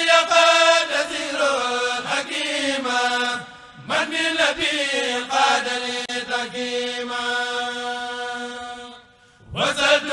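Voices chanting a Mouride khassida, an Arabic devotional poem, in long drawn-out phrases over a steady held low note. The chant breaks for a short breath a little under four seconds in, and again near the end.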